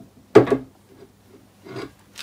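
A single sharp knock as the lathe's metal headstock is shifted and lifted on the bed, followed by a softer bump near the end.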